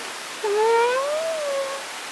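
A woman's closed-mouth 'mmm' of delight while chewing a hot mouthful, one long note that rises and then eases down over about a second and a half.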